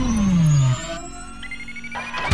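Electronic intro music: a loud synthesized tone slides steeply down in pitch and stops under a second in, leaving quieter held tones and a faint high note rising in pitch.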